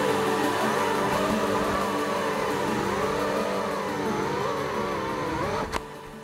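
Small FPV quadcopter's motors whining, their pitch wavering up and down with the throttle. Near the end there is a sharp knock as the quad comes down in the grass, and the motor sound stops. Steady background music runs underneath.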